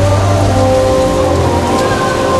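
Indoor swimming-pool race ambience: crowd noise and swimmers' splashing blend into a steady, even wash, with sustained music tones underneath.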